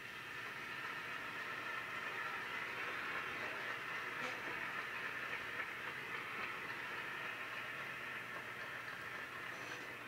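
Large seated audience applauding steadily, easing slightly near the end.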